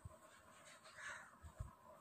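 Near silence: room tone, with one faint short sound about halfway through and a soft knock near the end.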